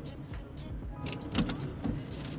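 Low steady rumble of a car's cabin, engine and road noise, with a few faint clicks about a second in and near the end.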